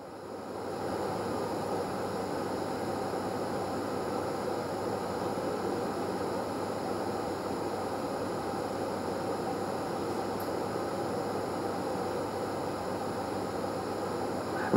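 A steady, even background hiss that swells over the first second and then holds level.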